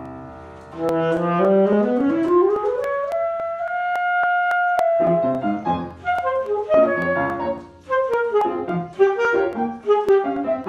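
Alto saxophone playing a solo passage: after a piano chord dies away, it climbs in a rising run to a long held note, then goes on with a phrase of quicker notes.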